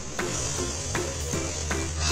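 A child blowing hard at a small plastic ball, a long, breathy rush of air, with background music underneath.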